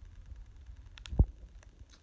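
A few faint clicks of a Baofeng UV-5R handheld radio's keypad buttons being pressed, with one short low thump a little past halfway, the loudest sound.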